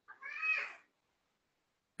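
A single short, high-pitched call, under a second long, rising then falling in pitch.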